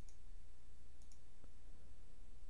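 A few faint computer mouse clicks, two of them close together about a second in, over a low steady hum.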